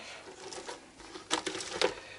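A hand rummaging through freshly caught shrimp in a plastic tub: faint rustling with a few sharp clicks of shell and plastic a little past the middle and again near the end.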